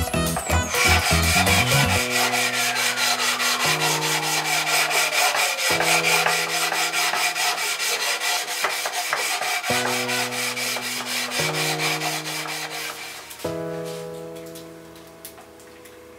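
Hand sanding of a wooden board with a sanding block: a steady scratchy hiss of quick back-and-forth strokes that stops about 13 seconds in. Background music with held chords and a long falling sweep plays underneath.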